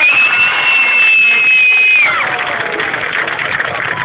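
Crowd cheering, with one loud whistle held for about two seconds before it drops away.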